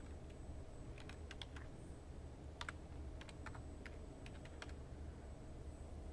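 Computer keyboard keys clicking as a short folder path is typed, in two short runs of keystrokes: one about a second in, the other from about two and a half seconds.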